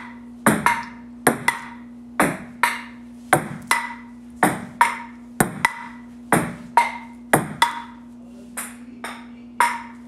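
Solo table tennis rally against a wall: the celluloid ping-pong ball ticking sharply off the paddle, the table and the wall in a steady rally, mostly in quick pairs about once a second.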